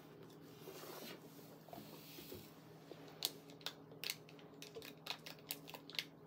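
Faint tearing and crinkling of a paper drink-mix stick packet being opened and handled over a plastic bottle, with a few light ticks in the second half.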